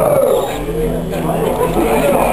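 Many voices talking and calling out over each other, a crowd in a hall.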